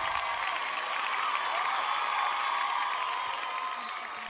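Recorded crowd applause and cheering at the tail of a radio show's intro jingle, over a steady held tone, slowly fading toward the end.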